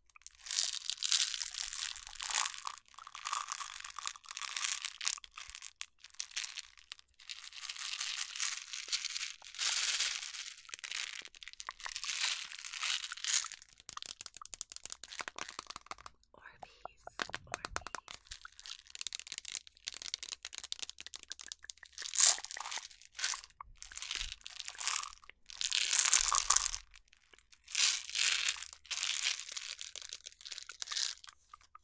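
Clear plastic jar of small hard candies handled close to the microphone: the candies rattle and shift inside as the jar is tipped and turned, with fingernails on the plastic lid. The sound comes in irregular crisp bursts with short pauses.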